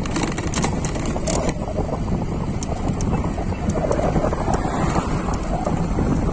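Wind buffeting the microphone on a moving e-bike: a steady, heavy rumble with scattered small clicks and rattles.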